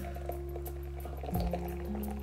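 Background music with long held notes, shifting to a new note about a second and a half in, over a faint trickle of thick cocoa drink being poured from a plastic pouch into a glass.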